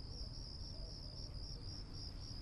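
Crickets chirping in a faint, continuous high trill that pulses slightly: night-time insect ambience.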